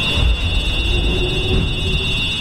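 Sound effects of a giant alien tripod walking machine on a film soundtrack: a steady high electronic drone over a low rumble.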